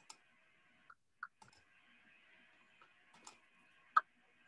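A few scattered, sharp clicks of a computer mouse as a screen share is set up, the loudest near the end, over a faint steady background hiss.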